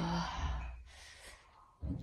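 A woman's breathy sigh that fades out within about a second.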